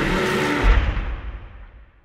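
Film trailer's closing sound mix: a loud, dense noisy wash with a low boom about two-thirds of a second in, after which it turns dull and fades out.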